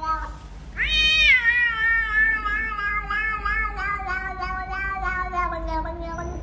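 A domestic cat's long, drawn-out meow of about five seconds. It starts loud and high about a second in, then wavers and slowly sinks in pitch, after the tail of a shorter call at the very start.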